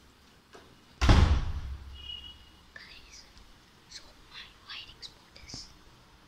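A sudden loud thump about a second in that fades over about a second, followed by a child's soft whispering.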